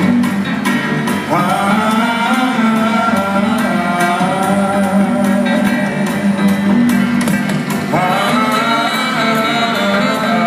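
Live jazz band playing with piano, upright bass and drums. A melody line comes in with a rising scoop about a second in and again near the end.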